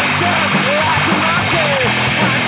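Punk rock band recording: loud, dense distorted instruments, with short sliding tones that swoop up and down above them.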